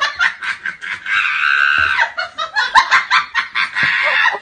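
High-pitched laughter in rapid bursts of a few a second, with a held squealing cry about a second in. It starts and stops abruptly, as an inserted laugh sound effect would.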